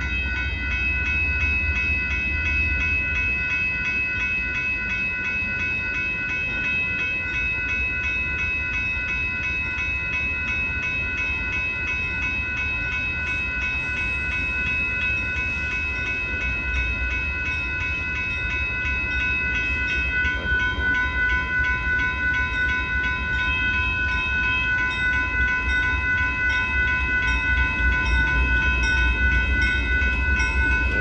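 Grade-crossing warning bell ringing steadily with an even, repeating strike while a Union Pacific limestone freight train rumbles through the crossing. The rumble of the train grows louder and more uneven over the last third.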